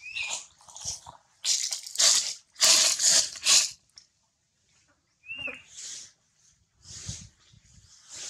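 Young monkeys making a string of short, breathy, noisy calls, about one or two a second and loudest between two and four seconds in. Two brief high squeaks come in, one at the very start and one about five seconds in.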